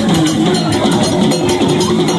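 Vodou ceremonial song: a man sings into a microphone over a steady, loud percussion accompaniment with a bell.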